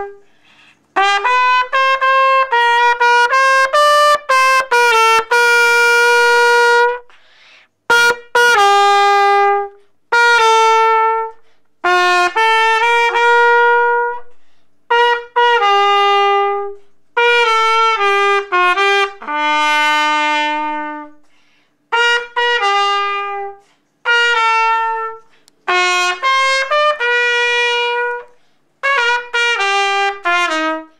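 Solo trumpet played by a child: a slow melody of held notes in short phrases, with brief pauses between them.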